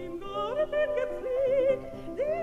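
Operatic soprano singing a German art song (lied) with wide vibrato, accompanied by piano.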